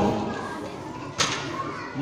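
Faint background voices in an echoing room between lines of a man's chant, his voice fading out at the start. One sharp click about a second in.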